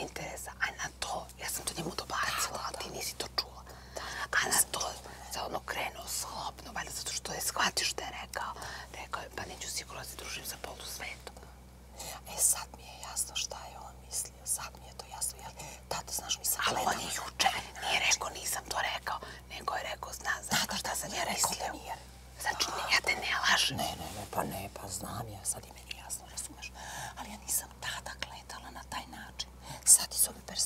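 Two women talking to each other in whispers.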